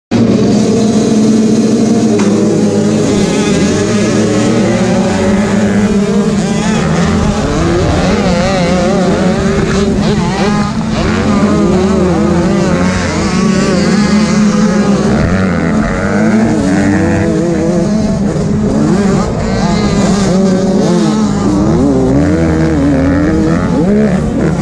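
85cc two-stroke motocross bike engines racing in a pack, heard loud and close from the rider's helmet. The pitch rises and falls constantly with the throttle and gear changes, with several engines overlapping.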